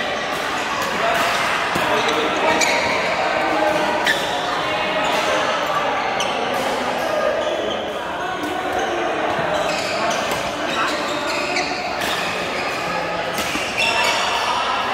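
Badminton rackets striking shuttlecocks on several courts: sharp clicks at irregular intervals, over the chatter of players in a large hall.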